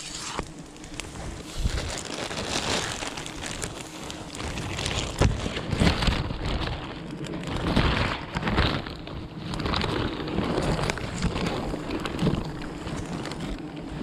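A plastic sheet rustling and crinkling close to the microphone, in irregular bursts with many small crackles, as it is drawn over a honeycomb.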